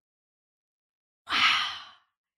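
Silence, then a little over a second in a woman's long breathy sigh, an unvoiced, breathed "wow" that fades away.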